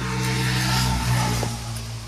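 A car passing on a nearby road: engine and tyre noise that swells to a peak about a second in, then fades.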